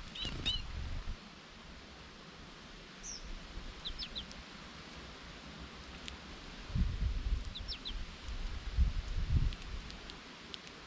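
Small songbirds giving a few short, scattered chirps, with low rumbling gusts of wind on the microphone in the first second and again through the second half, the loudest part.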